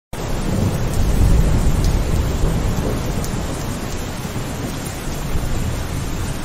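Steady rain falling on wet brick paving, with a few faint drop ticks, under a low rumble that is loudest in the first few seconds.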